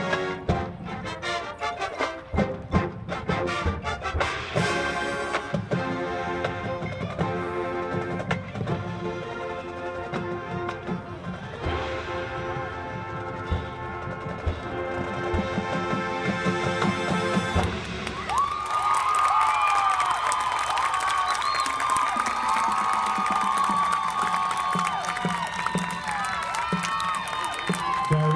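High school marching band, brass with drumline and pit percussion, playing the closing bars of its field show, with drum strokes throughout. About two-thirds of the way through the music stops and the crowd cheers and shouts.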